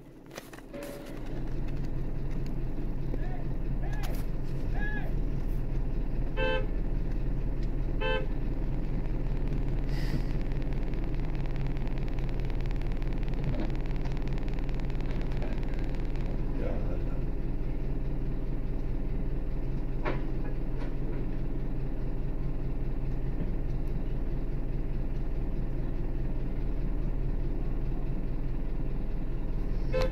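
Car engines idling steadily in stopped traffic, with two short car-horn toots about six and eight seconds in.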